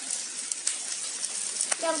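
Shrimp, pork belly and cucumber slices sizzling on an electric griddle, a steady hiss with scattered small pops.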